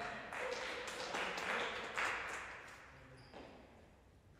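Real tennis rally: a series of sharp knocks from the ball on rackets and on the court's walls and floor, each echoing in the large enclosed court, the loudest about two seconds in.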